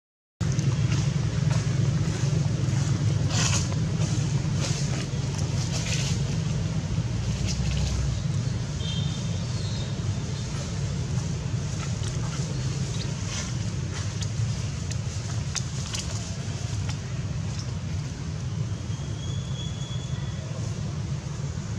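A steady low rumble of outdoor background noise, with scattered faint crackles and two brief high chirps, one about nine seconds in and one near the end.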